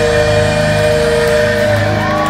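A heavy metal band's final chord ringing out live, with distorted electric guitars and bass held in a steady drone and no drums, closing out the song.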